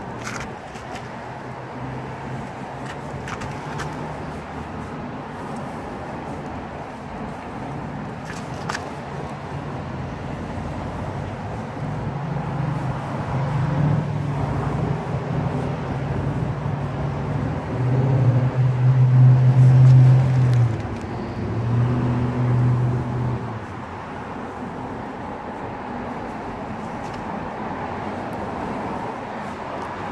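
Low engine hum of a motor vehicle, swelling about halfway through and loudest for a few seconds before it drops back to a steady background drone.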